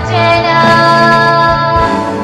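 Pop ballad sung in Burmese with backing music, the voice holding one long steady note through most of the stretch.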